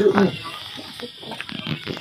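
A person's voice briefly at the start, then a lull with a few faint clicks.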